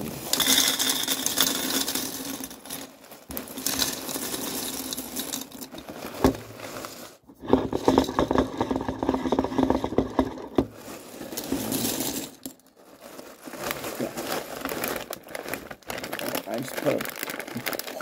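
Corn flakes poured from a plastic cereal bag liner into a bowl: the bag crinkling and the dry flakes rattling and rustling in several bursts, with brief pauses between them.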